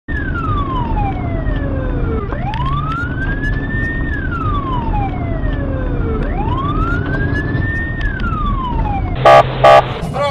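Police car siren wailing in a slow fall and rise, about one cycle every four seconds, signalling a moped rider to stop, over the patrol car's engine and road noise. Near the end come two short, very loud horn blasts in quick succession.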